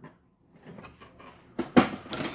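Faint rustling and handling noises, then one sharp knock about three-quarters of the way through, as the tumbler's packaging box and parts are handled on a table.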